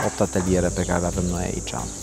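A person speaking, with a steady high-pitched tone behind the voice that stops just before the end.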